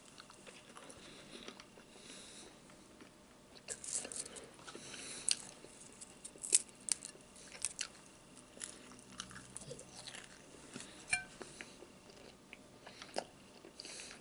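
A man biting and chewing bacon, with mouth sounds picked up up close. It is quiet for the first few seconds, then comes a run of sharp crunching clicks from about four seconds in, which thins to scattered clicks later.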